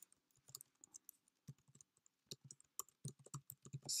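Faint typing on a computer keyboard: a run of quick, irregular key clicks.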